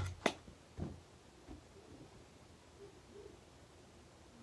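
A sharp click just after the start and a soft thud just under a second in, light impacts of small objects landing. After that only faint room sound.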